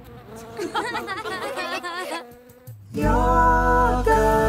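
A cartoon bee character's buzzing, warbling voice for about a second and a half, then calm music with long held notes starting about three seconds in.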